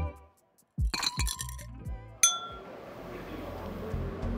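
Glassware clinking: a quick cluster of light clinks about a second in, then one sharp, clear glass chime that rings on a little past two seconds, followed by the hum of a room. Background music cuts off just as it begins.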